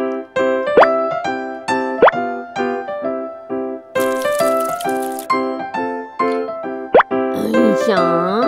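Cheerful children's background music with short repeated notes, broken by three quick rising pop effects about one, two and seven seconds in and a brief hiss about four seconds in.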